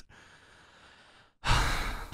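A person sighing: a faint, breathy exhale for over a second, then a sudden louder breathy rush about one and a half seconds in.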